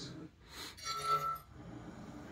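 TV news transition sting played through a television speaker: a short hit followed by a bright, ringing chime tone lasting about half a second.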